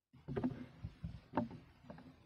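Wet, sticky sounds of a peeled citrus fruit being pulled apart by hand and eaten, with three short sharp smacks and clicks.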